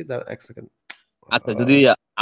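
A man talking over a call, with one sharp click about a second in, in a short gap between his words.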